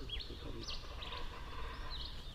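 Orange-fronted parakeets calling softly: a few short, faint chirps scattered through, over steady low background noise.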